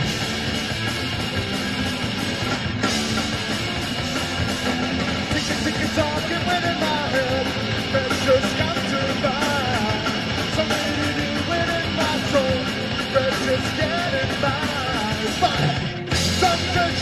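Punk rock band playing live, with electric guitars and a drum kit, and a man singing into a microphone from about six seconds in.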